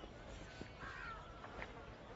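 Faint bird calls, the clearest about a second in, over a low background hum.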